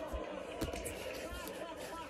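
Voices from a cartoon video playing, with no clear words, and two light sharp clicks a little after half a second in.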